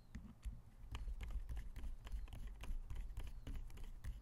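A screwdriver turning a small screw into the side plate of an Avet JX 6/3 fishing reel. The tool and metal parts make a run of faint, irregular clicks over low handling noise.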